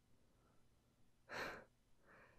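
Near silence broken by a single short breath from a man, about a second and a half in.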